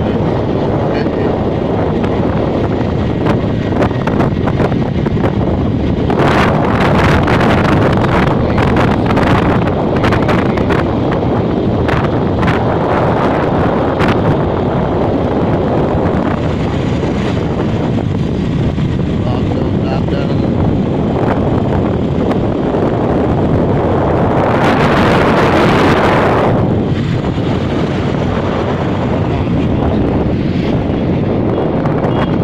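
Wind buffeting the microphone on a moving motorcycle, with the engine and road noise running underneath. The buffeting crackles harder between about 6 and 14 seconds in, and there is a louder swell about 25 seconds in.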